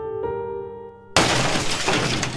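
Soft piano notes, then about a second in a glass window shatters with a sudden, loud crash of breaking glass that carries on over the piano.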